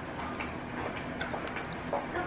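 Quiet eating sounds: a few faint, scattered clicks from chewing and utensils over a low steady room hum.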